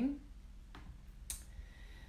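Two light clicks about half a second apart, a little under a second in, from working the device she is streaming on over quiet room tone.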